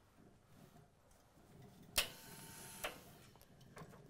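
Steam iron being handled and put down: a sharp click about halfway through, a faint hiss after it, then a second, softer click. The sounds are faint.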